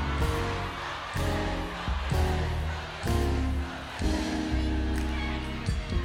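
Live band playing a slow R&B groove, with bass notes held about a second each, under a concert audience singing along.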